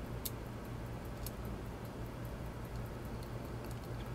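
A few faint, light clicks of tweezers touching the pocket-watch movement as the ratchet wheel is lined up, over a steady low hum.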